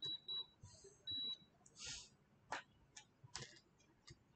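Three high-pitched electronic beeps on a single steady tone, two short ones close together and then a longer one about a second in, followed by a short soft hiss and a couple of sharp clicks.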